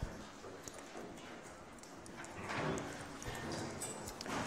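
Quiet lecture-hall room sound with light knocks and clicks of objects being handled at the front desk, starting with one sharp knock. A louder, rustly stretch comes about halfway through.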